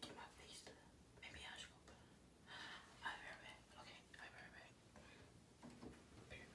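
Near silence with a few faint whispered words.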